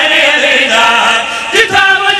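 Several men chanting a devotional qasida together into microphones, loud and continuous, with a brief dip and a fresh loud entry about one and a half seconds in.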